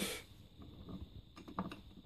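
Faint handling noise, a low rustle with a few light clicks about a second and a half in.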